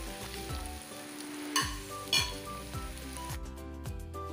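Sliced onions sizzling as they fry in oil in a nonstick pan, stirred with a spatula, with two sharp spatula scrapes against the pan about a second and a half and two seconds in. The sizzling stops shortly before the end, while background music with a steady beat plays throughout.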